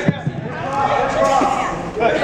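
Voices talking in a large hall, with one dull thump right at the start.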